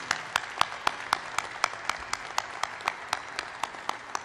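Audience applauding in a large hall, with one set of sharp claps standing out above the rest at about four a second. The applause dies away near the end.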